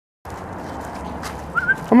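A greyhound-type dog gives one brief, high, wavering whine about one and a half seconds in, over steady outdoor background noise.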